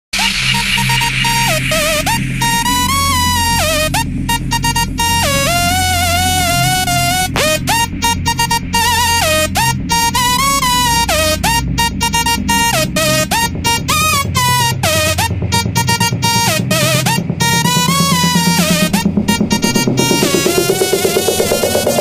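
Electronic dance music remix: a synthesizer lead plays a stepping melody over a steady bass line, and a sweep rising in pitch builds over the last few seconds.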